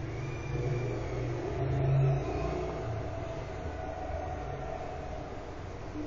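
A low, steady mechanical rumble with a hum, swelling briefly to its loudest about two seconds in.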